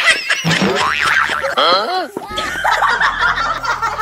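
Cartoon-style boing sound effects: several quick glides rising and falling in pitch in the first two seconds, mixed with dubbed laughter. A low steady drone comes in about halfway.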